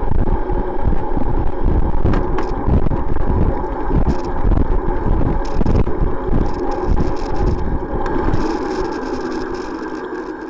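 Wind buffeting the microphone of a camera mounted on a moving cycle, over a steady hum of tyre and road noise. The buffeting dies down near the end.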